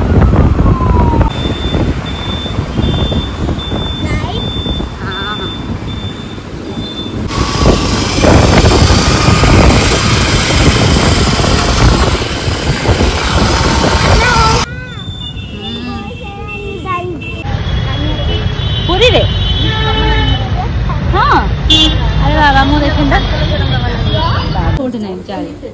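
Wind buffeting the microphone over road and traffic noise while riding pillion on a moving scooter, with a short repeated beep over the first few seconds and louder wind in the middle. The sound changes abruptly about fifteen seconds in to quieter street noise with voices.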